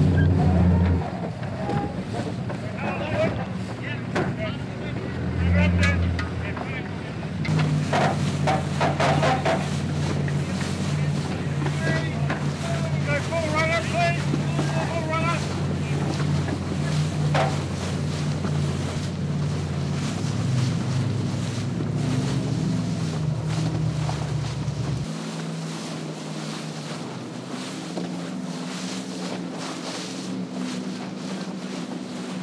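Sound on the water around racing sailing yachts: wind and water noise with a steady engine drone from motorboats and scattered shouted voices.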